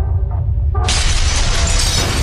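Logo-intro sound effects: a deep bass rumble under music, then a sudden crash of shattering debris a little under a second in that carries on as a dense crackle.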